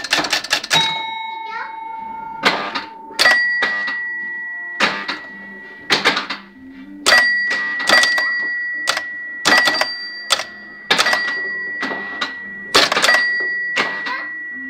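Electromechanical scoring unit of a 1969 Maresa Oxford pinball machine at work: bursts of rapid mechanical clacks from its relays and stepping unit, about one burst a second, each setting a score bell ringing on after it. A lower bell rings about a second in, and a higher bell rings repeatedly from about three seconds on.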